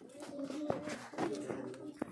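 Pigeons cooing in low, level notes, with a sharp click about two-thirds of a second in.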